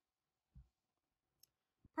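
Near silence, broken by a faint, soft low thump about half a second in as a cone of yarn is set down on a cloth-covered table, and a couple of faint clicks near the end.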